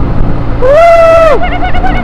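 A 100cc motorcycle engine and wind rumble steadily while riding through a road tunnel. Over it, a long whooping yell rises, holds and falls away about half a second in, and a short wavering call follows near the end.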